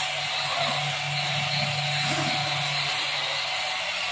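Steady background hiss with a low, even hum that stops about three seconds in.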